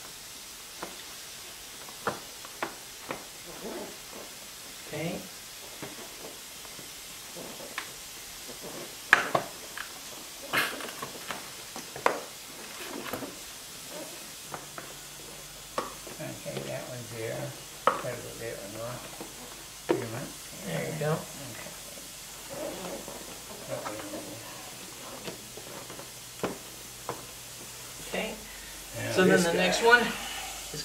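Plastic grille inserts being pressed and snapped into the tabs of a ZR1-style front bumper cover: scattered sharp plastic clicks and knocks throughout. Low mumbled talk runs through the second half.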